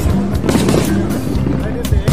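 Aerial fireworks shells bursting in a rapid, irregular series of bangs and crackles, over a background of crowd voices and music.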